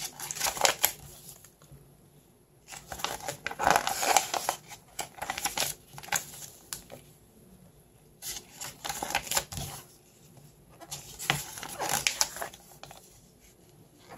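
Paper pages of a printed instruction manual being handled and turned, rustling in short bursts every couple of seconds with quiet pauses between.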